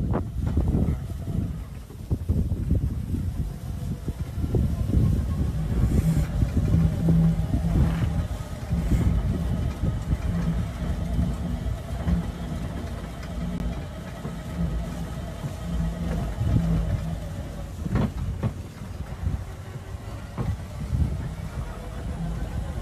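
A vehicle engine running steadily under a heavy, uneven low rumble, as if driving over grass with wind buffeting the microphone.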